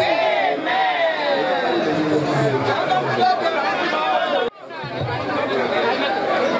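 A woman talking into a microphone over a crowd's chatter. The sound drops out briefly about four and a half seconds in.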